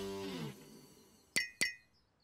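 The end of a cartoon music cue, a falling glide that fades out within the first half-second, then two quick bright, ringing clinks about a quarter-second apart: a cartoon sound effect.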